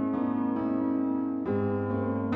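Piano interlude in a song: held keyboard chords, with a new chord struck about one and a half seconds in.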